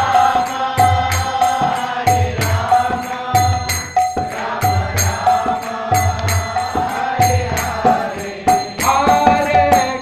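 A man singing a devotional chant with a steady rhythm of small brass hand cymbals (kartals) struck about three times a second, over a low beat about once a second.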